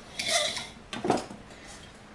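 Hands handling sliced jalapeños in a stainless steel colander: two short rattling, rustling bursts, the first about half a second in and the second about a second in.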